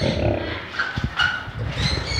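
Big cats, white tigers, growling and snarling in rough, uneven bursts while they fight over a carcass as they feed.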